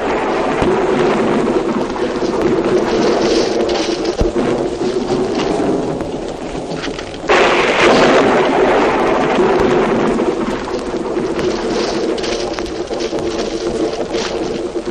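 Sound-effect thunderstorm of rumbling thunder and rain, with steady music underneath. It starts suddenly and swells into a loud thunderclap about seven seconds in.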